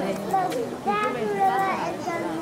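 Children's voices and crowd chatter: several young voices talking and calling out over one another.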